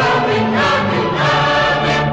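Music: a choir of several voices holding long notes together over the song's accompaniment, the chord shifting about half a second in and again just past a second.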